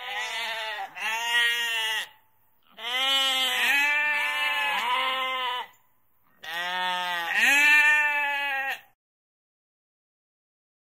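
Domestic sheep bleating: three long, quavering baas separated by short pauses.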